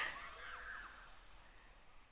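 A faint call from a distant voice trails off in the first second, followed by quiet outdoor ambience.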